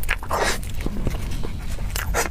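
Close-miked eating of a soft cream-filled mochi: wet biting and chewing mouth sounds mixed with the rustle of the plastic wrap it is held in. The longest noisy burst comes about half a second in, followed by small clicks.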